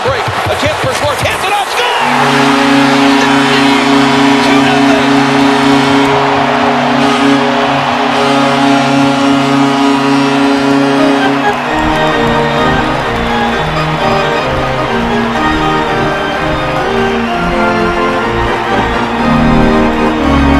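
A hockey arena's goal horn sounds a steady multi-note chord for about ten seconds, starting about two seconds in, over a cheering crowd, heard from the stands. About twelve seconds in the horn gives way to the goal song playing over the arena PA.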